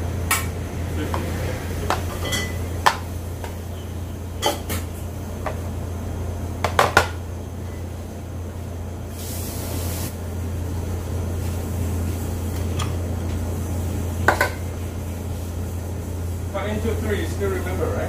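Metal tongs clinking and scraping against a stainless steel tray as meat is portioned, in scattered sharp clinks. A steady low kitchen hum runs underneath, with a brief hiss about nine seconds in and voices near the end.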